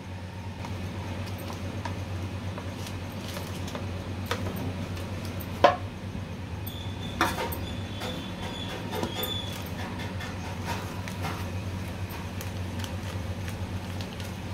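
Handling noise as a set sweet is lifted from an aluminium tin by its butter-paper lining and set on a board: paper crinkling and a few light clicks and knocks, the sharpest about six seconds in. A steady low hum runs underneath.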